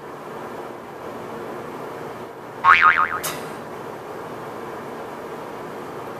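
A short, loud boing-like warble whose pitch wobbles rapidly up and down, a little under halfway through, followed at once by a sharp click, over a steady rushing background noise.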